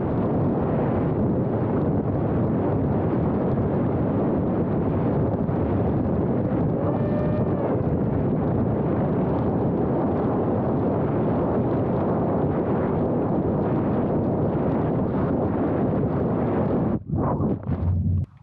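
Steady wind rush from an FPV flying wing's onboard camera in fast low flight, with the electric motor and propeller under it and a faint whine that rises and falls about seven seconds in. About a second before the end the sound breaks up as the wing comes down in the grass.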